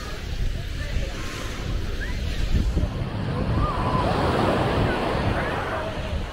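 Small ocean waves breaking and washing up the sand, with a swell of wash in the second half, wind on the microphone and distant voices of people on the beach.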